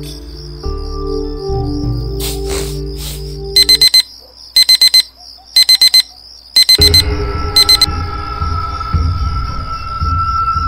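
A mobile phone alert beeping: five bursts of four quick high beeps, about one burst a second, loud over the soundtrack. Background music stops as the beeps begin and a new tune comes in near the end of them, over a steady high cricket-like chirring.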